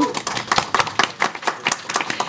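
Brief applause from a small group of people, a quick irregular run of hand claps.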